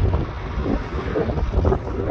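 Wind buffeting the microphone: a steady low rumble with a rushing hiss over it.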